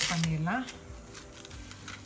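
A voice chanting one drawn-out syllable in a sing-song, rising at its end, for about the first half second. Then it drops to a quieter stretch with faint rustling from plastic cling wrap being pressed around a steel bowl.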